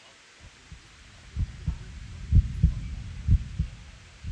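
Heartbeat sound effect: paired low thumps about once a second, faint at first, loudest in the middle, then fading away near the end.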